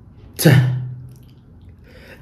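A man's voice pronouncing a single isolated, strongly aspirated "t" ("teh") about half a second in: a sharp burst of released air followed by a short vowel that fades. It is a demonstration of a plosive consonant, the air stopped and then released.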